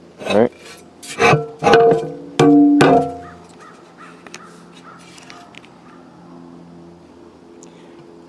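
A man's voice making several short, untranscribed mutters or grunts in the first three seconds, then a quiet stretch with only faint small clicks.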